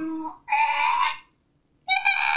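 A woman's wordless, high-pitched squeals of disgust: two drawn-out cries within the first second and a half, the second one higher.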